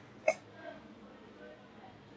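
A single brief vocal sound, a short catch of the voice, about a quarter of a second in, followed by faint room tone.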